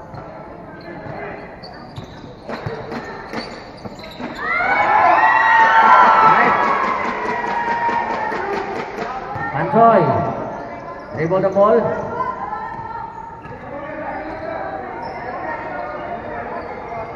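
Basketball bouncing on a concrete court during play, with many spectators' voices shouting together for several seconds from about four seconds in, then a couple of separate shouts around ten and twelve seconds.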